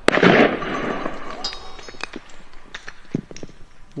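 A loud firework-type bang that dies away over about half a second, followed by scattered small pops and clicks for the next few seconds.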